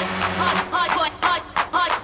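Electronic music: a quick run of short notes, each dropping in pitch, about four a second, over a low steady hum that stops early on.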